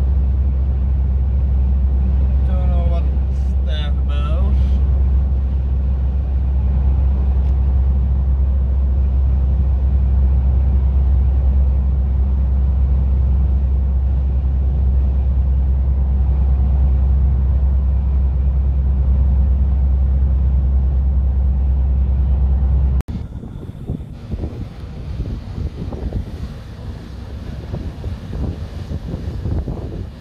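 Steady low drone of a lorry's engine and tyres heard inside the cab at motorway speed. About 23 seconds in it cuts abruptly to wind buffeting the microphone and water rushing along a ship's side.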